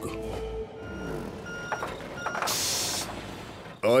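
A vehicle's reversing alarm giving several short beeps about half a second apart over a low engine rumble, then a short loud hiss of air lasting about half a second.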